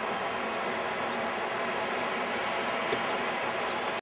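Steady, even vehicle noise, with a couple of faint clicks about three seconds in.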